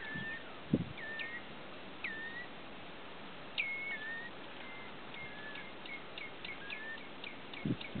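Common redshanks calling with sharp, downward-sliding notes. A few come spaced out at first, then a quickening run of about three a second in the second half, over a steady hiss. There is a low thump about a second in and a couple more near the end.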